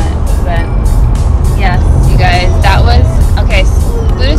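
Steady low road rumble inside a moving car, under music with a regular beat. A voice comes in over it through the middle.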